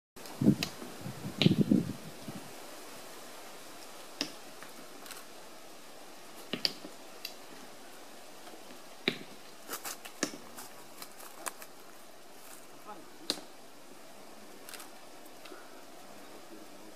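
Sharp knocks of a stone striking a coconut against a rock slab as a capuchin monkey pounds it to crack it open. A few loud, deeper blows fall close together near the start, then single knocks follow every second or two.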